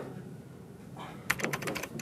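Fingers tapping quickly on the wooden top of a standing desk: a rapid run of light, sharp taps, about ten a second, starting a little over a second in.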